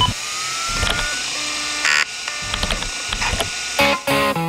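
Sound effects of an old DOS-era personal computer booting: a short beep at the start, a rising whine as the drive spins up, then scattered clicks and chatter of the drive and keyboard keys. Guitar music comes in near the end.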